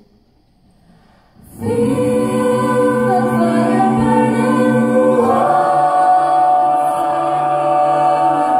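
Mixed-voice high school jazz choir singing a cappella: after a brief hush, the voices come in together about a second and a half in on a held chord, then move to a new chord a little past halfway.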